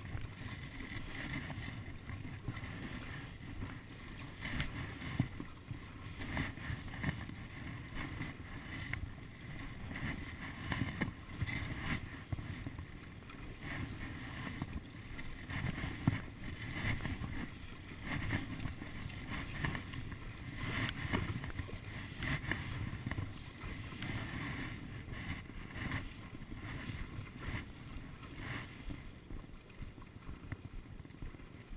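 Stand-up paddleboard paddle dipping and pulling through choppy salt water, the splashy strokes swelling every second or two, with water sloshing against the board and wind rumbling on the microphone.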